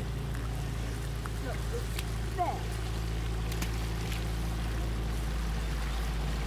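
Steady low hum of an idling boat engine. A couple of faint, brief calls sound about one and a half and two and a half seconds in.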